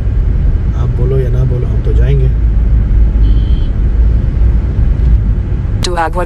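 Steady low road and engine rumble inside a moving car's cabin. A short high tone sounds about three seconds in.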